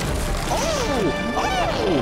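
Animated action-scene soundtrack: dramatic music with crashing, hitting impact effects. Two short shouts of "Oh!" fall in pitch, about half a second and a second and a half in.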